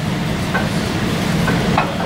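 Steady background noise of a lecture hall during a pause in the talk, a constant hiss and hum with a few faint short ticks.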